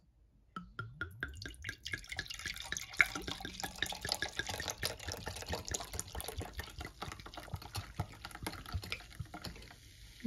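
Stella Rosa semi-sparkling red wine poured from the bottle into a glass tumbler: a quick run of glugs rising in pitch as the pour starts, then a steady splashing pour with fizzing as the wine foams up in the glass.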